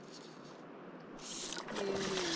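Faint steady hiss of a shallow stream running, swelling with a rush of higher hiss about one and a half seconds in.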